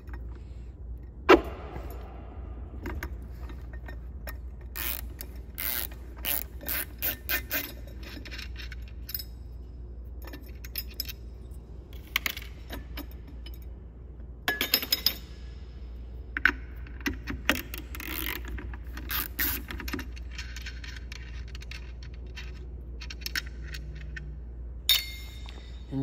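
Hand ratchet wrench with a socket clicking in repeated bursts as it turns the nut holding the bottom switch-housing plate on a ceiling fan motor. A sharp knock comes about a second in, all over a steady low hum.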